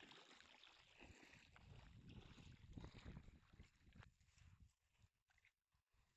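Faint water splashing and sloshing as a puppy paddles through shallow water, quietening after about four seconds.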